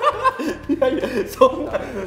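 A man laughing heartily, chuckles mixed with bits of talk.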